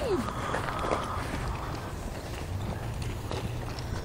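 Footsteps as someone walks over gravel and onto grass, with a steady low rumble on the microphone and a few faint ticks. A child's voice trails off in a falling call at the very start.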